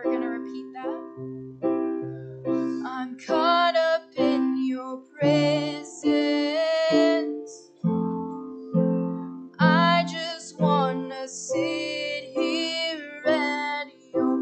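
Live worship song: a woman singing over sustained piano-style keyboard chords, the voice swelling into longer held phrases in the middle and again near the end.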